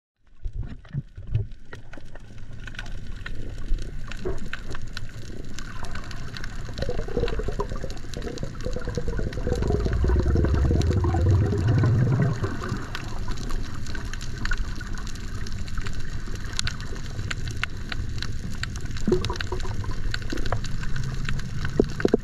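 Water moving around an underwater camera: a steady, muffled wash with many small clicks, and a low rumble that swells in the middle.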